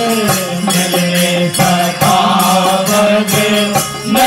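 Voices singing a Hindi devotional bhajan about Krishna together through microphones, holding long notes that step from pitch to pitch, over a light percussion beat at about four strokes a second.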